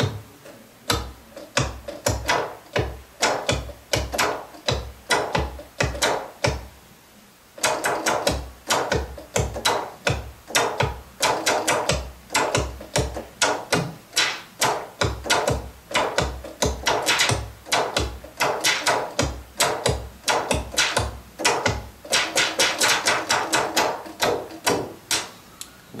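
Minimoog Voyager analog synthesizer played from its keyboard as a drum voice: a fast, irregular run of short percussive hits, deep bass-drum thumps mixed with clicky, noisy snaps. There is a brief break about seven seconds in.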